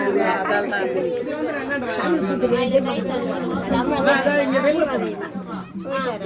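Several people talking over one another in overlapping chatter, with a steady low hum underneath from about two seconds in.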